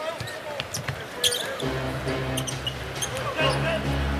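A basketball being dribbled on a hardwood arena court during live play, heard as a run of short sharp bounces over arena background noise. A steady low droning tone comes in about halfway through.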